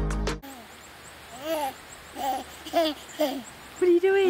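Background music cuts off about half a second in. Then a baby coos and babbles in a string of short squeals, each rising and falling in pitch.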